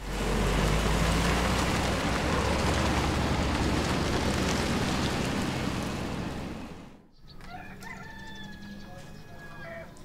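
A car pulling away, a loud rush of engine and tyre noise with a low rumble that starts suddenly and fades out about seven seconds in. Then a rooster crows.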